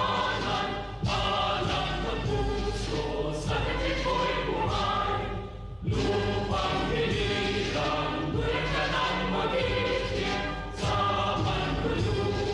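Choral music, a choir singing with instrumental backing, in phrases that pause briefly about every five seconds.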